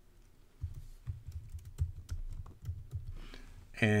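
Computer keyboard being typed on, a run of quick key clicks starting about half a second in, as a short chat message is typed.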